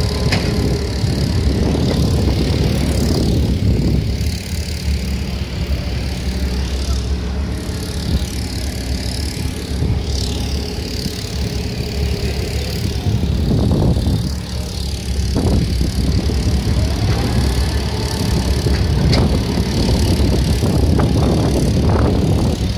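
Heavy dump truck's diesel engine running steadily as the truck drives over the site.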